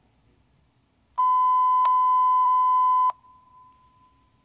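A police dispatch radio alert tone: one steady, high beep lasting about two seconds, starting about a second in and cutting off abruptly, with a faint trace of the tone lingering after it. It marks the start of the last-call broadcast.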